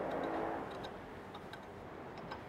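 A few faint metallic clicks as an Allen key turns and loosens the screw holding a steel shipping bracket on a UV flatbed printer's carriage rail.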